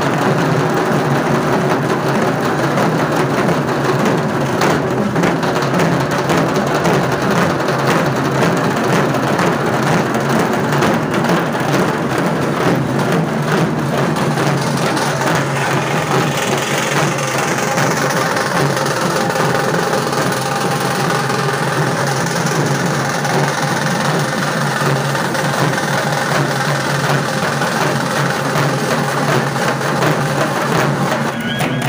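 Several dhaks, the large Bengali barrel drums, beaten with sticks together in a loud, dense, continuous rhythm.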